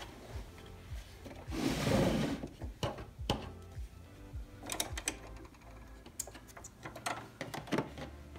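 Fabric rustling as the strap pieces are picked up and handled, then scattered clicks and taps from a sewing machine as the strap is set under its presser foot, over light background music.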